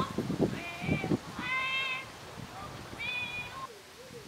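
A human voice imitating a bird call, played back through a small portable loudspeaker: three short, high calls spread across the few seconds.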